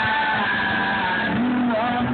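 Live band with guitars playing through an outdoor festival sound system, heard from the crowd: held notes between sung lines, one note sliding in pitch near the end.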